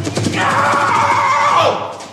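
A man in a clown costume screaming "No!": a short shout, then one long, drawn-out scream of "no" that fades out near the end.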